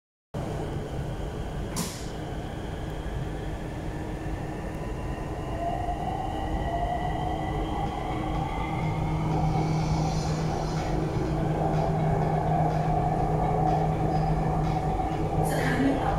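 Bangkok MRT metro train heard from inside the car while it runs on the elevated track: a steady rumble of wheels on rail with a thin motor whine that rises slowly in pitch. The sound grows louder as the train gathers speed, with a single sharp click about two seconds in.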